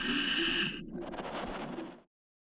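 Scuba diver's regulator hissing on one breath for under a second, over steady low underwater background noise that cuts off at the end.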